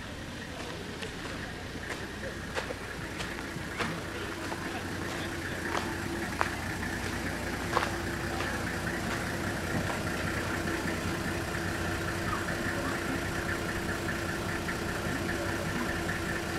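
A vehicle engine idling steadily, its hum growing slightly louder, with a few faint clicks.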